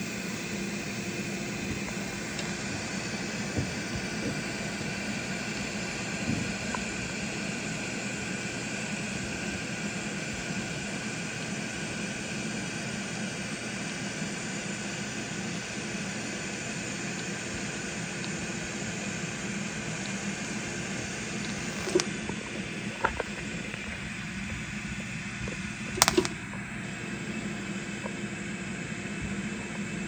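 Pulse MIG welding on stainless steel: a steady buzzing hiss from the arc, with a few sharp cracks about 22 and 26 seconds in.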